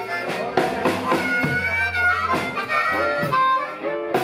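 Blues harmonica played into a vocal microphone, its notes bending and sliding, over a live band of electric bass, drums and electric guitar.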